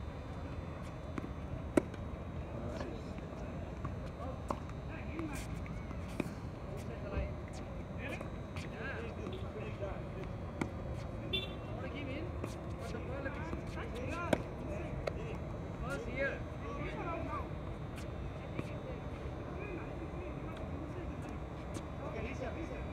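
Tennis balls struck by rackets on an outdoor court: a few sharp pops several seconds apart, the loudest about two seconds in and again around fourteen seconds. Indistinct distant voices and a steady low background rumble run beneath.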